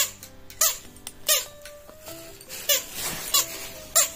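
Battery-powered children's electronic toy playing a simple beeping tune of steady stepped notes, cut across by about six sharp squeaky chirps.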